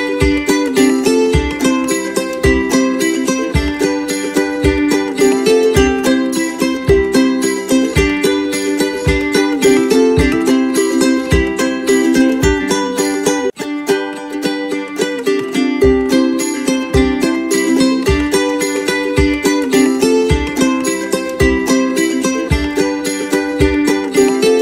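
Background music: a plucked-string tune over a steady beat, with a brief break a little past halfway.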